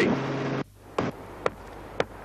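A steady hum cuts off about half a second in. Then come two sharp knocks about half a second apart: a hammer striking old bricks to knock the mortar off.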